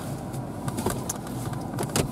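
Steady low hum inside a parked car's cabin, with a few faint clicks.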